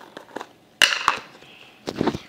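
Round plastic tub of slime being opened by hand: a few light clicks and taps, then a louder, sharp sound about a second in as the lid comes free, and more clicks near the end.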